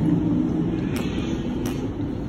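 A car engine idling with a steady low hum that softens a little in the second half, with two short clicks about a second apart.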